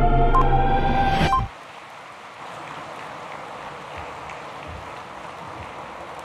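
Broadcast countdown intro music with sustained tones, cutting off abruptly about a second and a half in. After it, a large indoor audience applauding in a steady, even patter.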